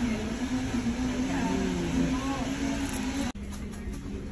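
Faint background voices over a steady low hum. The sound cuts suddenly to a quieter background a little over three seconds in.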